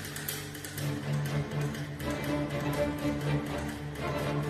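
Student string orchestra playing a soft passage: low sustained notes under light, evenly spaced short notes.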